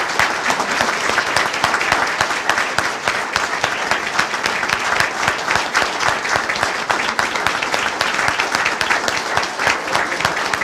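A large audience applauding: dense, steady clapping with no let-up.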